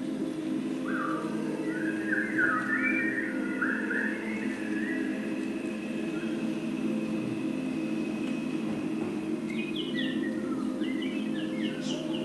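Bird calls in two bouts of short chirping phrases, one a second or so in and another near the end, over a steady low hum.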